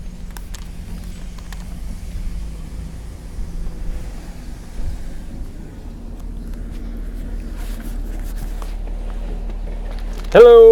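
Car engine running with a steady low rumble, heard from inside the cabin as the car creeps forward in a drive-through lane, with a few light clicks and knocks.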